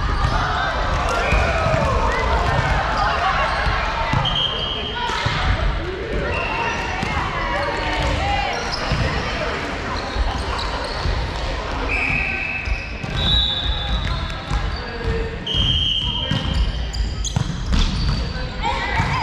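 Indoor volleyball rally in a large echoing hall: players' voices calling out, several short high squeaks of sneakers on the hardwood court, and the sharp knocks of the ball being hit.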